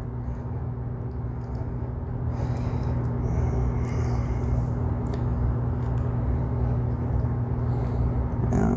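Steady low hum with a faint background hiss, and a few faint small clicks of a metal pick and fingernail prying at an e-clip on a small compressor pump gear.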